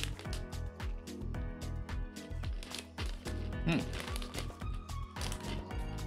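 Background music with a steady beat, with a foil snack bag crinkling under it.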